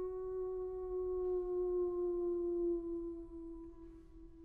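A soprano holding one long straight-tone note without vibrato, its pitch sagging slightly, fading about three seconds in.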